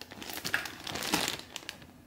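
Clear plastic bags crinkling in irregular bursts as hands handle the bagged cables.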